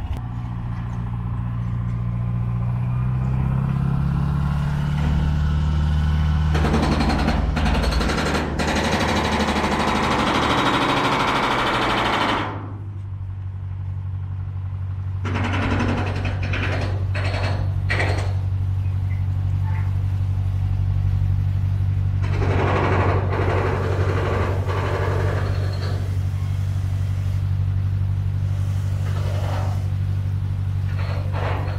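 Motor boat's engine droning steadily, heard on board while under way. It shifts pitch in the first few seconds, then holds steady from about twelve seconds in. Stretches of rushing noise lasting several seconds come over the drone three times.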